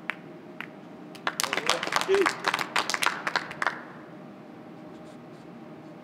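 Two sharp clicks of carom billiard balls striking each other, then a short burst of scattered applause from a small audience lasting about two and a half seconds, greeting a scored point.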